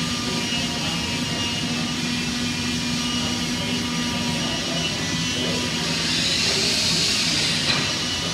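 Steady drone of wood-shop machinery running, a low hum with thin whining tones over an even rushing noise. A hissing swell comes about six seconds in, and a single click just before the end.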